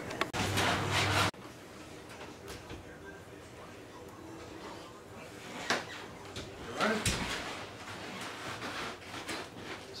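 An oven door and a baking pan being handled: a sharp click about six seconds in, then a heavier clunk about a second later, over quiet room tone.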